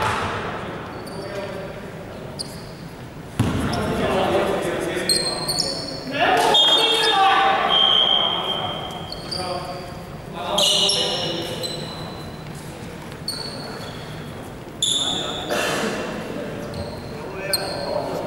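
Indoor basketball play on a wooden court: a ball bouncing with several sharp thuds, short high sneaker squeaks, and players' voices calling out, all echoing in a large sports hall.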